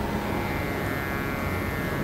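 Steady background noise with a few faint steady tones, even throughout, picked up through the stage microphones between phrases of speech.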